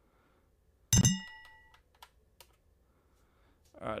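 Computer keyboard keys clicking faintly as a terminal command is typed and entered. About a second in there is one loud knock with a short metallic ring that fades within a second.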